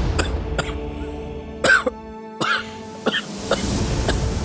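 Background music with sustained notes under a man's repeated short coughs; the two loudest coughs come about halfway through, as the low end of the music drops out for a moment.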